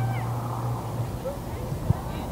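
Distant high-pitched shouts from people at a soccer game, with a low hum that is strongest in the first second and one sharp knock just before the end.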